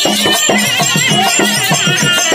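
Therukoothu live music accompaniment: drum strokes in a steady rhythm under a repeated low held note, with a high wavering melody line over the top.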